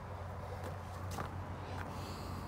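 A few faint footsteps on a dirt path over a steady low background hum.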